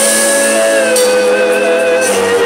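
Live band music with an electric guitar lead holding one long note that wavers slightly, over the band.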